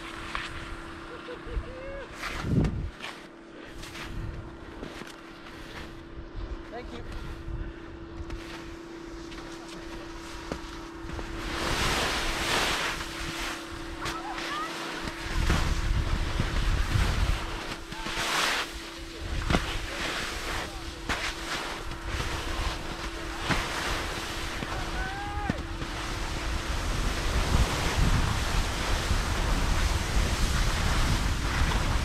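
Skis scraping over tracked snow with wind rushing across the microphone as the skier heads down a steep slope. This starts about halfway through and stays loud. Before that it is quieter, with a few knocks and a faint steady hum.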